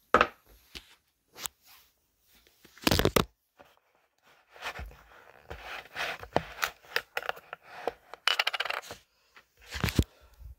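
Handling noises on a wooden table: a mug set down with a click, then scattered knocks, scrapes and rustles. There is a louder knock about three seconds in and a quick run of clicks near the end.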